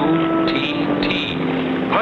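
Light propeller plane engine droning steadily as a cartoon sound effect, with held musical notes that shift in pitch over it.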